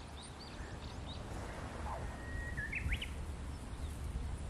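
Outdoor bird calls: several short chirps in the first second, then a longer whistled call ending in a quick upward sweep about three seconds in, over a steady low rumble.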